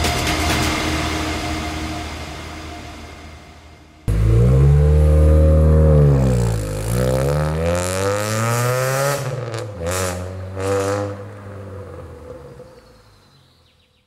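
Electronic music fades out over the first few seconds. Then the Mitsubishi Eclipse's engine and exhaust come in suddenly and loudly: the revs sink, then climb steadily for a couple of seconds. Two short throttle blips follow, and the sound fades away.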